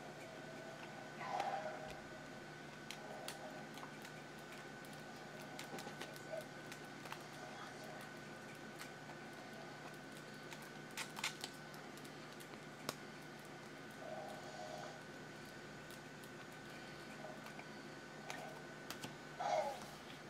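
Baseball trading cards flicked and slid off one another one at a time in the hands, giving faint scattered clicks and flicks, a few sharper ones now and then. A steady faint hum with a thin high tone runs underneath.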